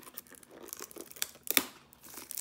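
Plastic shrink-wrap on a trading-card box crinkling as it is torn open, in scattered crackles with one sharp, loud crackle about a second and a half in.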